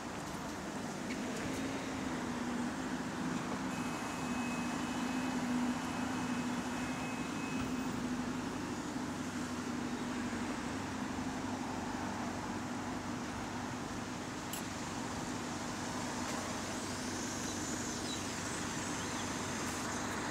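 Diesel engine of a single-deck bus idling steadily with a rattly sound.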